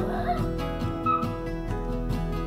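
Background music, with a toy poodle giving a couple of short, high whines, one at the start and one about a second in: whining to be played with.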